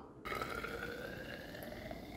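Fizzy home-fermented ginger ale poured into a tall narrow hydrometer test cylinder: a faint liquid hiss that begins a moment in, with a thin tone rising slowly in pitch as the cylinder fills and foams.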